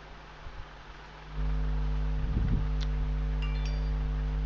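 A steady low electrical-sounding hum with several overtones comes on abruptly about a second and a half in, over faint hiss, with a few faint clicks and brief high tones near the end.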